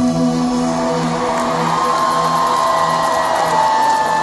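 Live pop music played over a concert PA and recorded from the audience: held, steady chords, with crowd cheering growing underneath from about halfway through.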